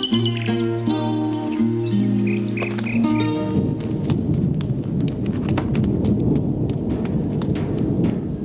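Film score with held notes, which gives way about three and a half seconds in to a steady low rumble with scattered faint clicks.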